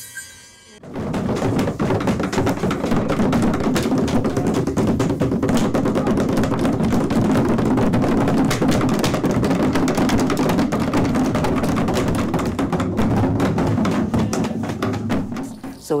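Many hand percussion instruments played together at once, a dense clatter of strikes, with voices mixed in. It starts suddenly about a second in and stops just before the end.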